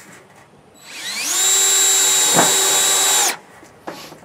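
Cordless drill driving a one-inch rubber-washered metal screw through corrugated metal roofing. The motor winds up about a second in, runs steady for about two seconds with one short knock midway, then stops suddenly.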